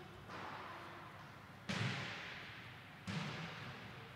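Faint hiss and low rumble of an open remote video-call audio line, jumping up suddenly three times and fading away after each.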